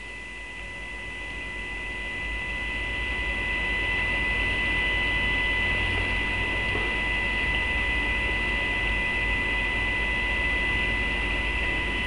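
Steady electrical mains hum with fixed high whine tones over it, swelling gradually over the first few seconds and then holding level.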